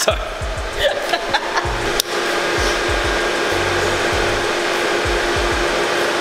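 Beer hissing out of a fermenting tank's sample valve into a glass: a loud, steady rushing hiss that starts abruptly about two seconds in. Background music with a steady beat plays underneath.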